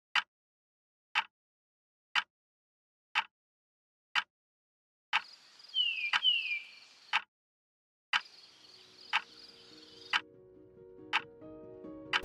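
Sharp clock-like ticking, one tick each second, over a soft high hiss. Two short falling chirps come about six seconds in, and quiet music notes come in over the last few seconds.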